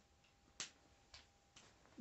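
A few faint, sharp clicks about half a second apart, the first the loudest: a marker pen tapping against a whiteboard as writing begins.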